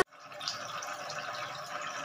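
Water trickling and splashing in a small homemade cement tabletop fountain, pouring from a spout into stacked bowls and down into the basin. A steady running-water sound that rises just after the start.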